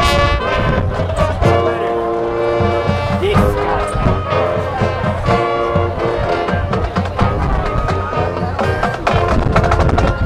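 Marching band playing: the brass section holds a series of long chords over the drum line.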